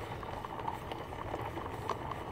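Plastic wheels of a toy doll stroller rolling over rough asphalt with a steady rumble, mixed with walking footsteps and small knocks.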